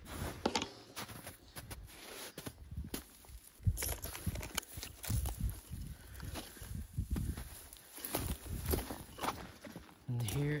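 Irregular footsteps and rustling as a hiker pushes down through conifer branches, brush and snow, with uneven knocks and crunches from boots and brushing twigs.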